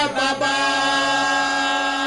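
A man's voice chanting in prayer, holding one long steady note.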